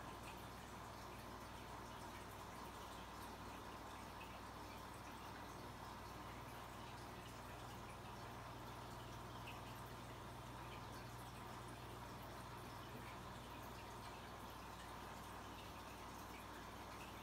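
Faint, steady water bubbling and trickling from an aquarium's sponge filter, over a low steady hum.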